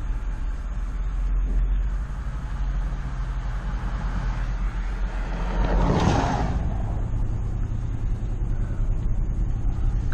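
Ford Expedition driving on a rural road, heard through a windshield-mounted camera: steady low engine and tyre rumble, with a brief louder rush of noise about six seconds in.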